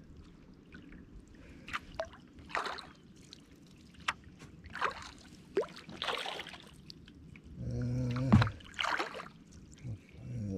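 Kayak paddle strokes in calm water: the blades dip in and pull out in an irregular series of small splashes, trickles and drips. A brief low hum comes about eight seconds in.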